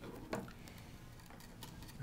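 Faint scattered light clicks of hands handling a ukulele headstock while a friction tuner post is turned to line up its string hole.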